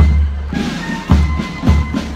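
Marching band playing in the street: a bass drum beating about twice a second under a high sustained melody.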